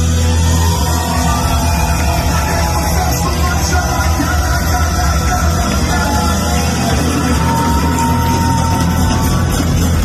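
Live rock band playing loudly, with a heavy bass line underneath.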